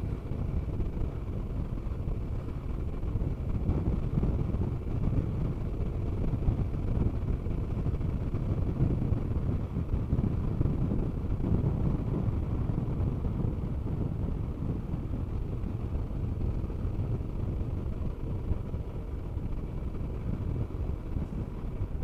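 Honda NC 750X motorcycle under way: a steady low rumble of its parallel-twin engine blended with wind and road noise on the bike's camera microphone.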